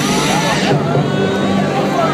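Live electronic dance music played loud over a festival sound system, with a crowd shouting and singing along close around. A high hiss in the music sweeps down and drops out under a second in.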